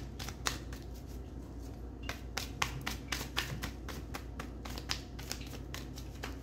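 Tarot cards being shuffled by hand: a quick, irregular run of card clicks and flicks, several a second.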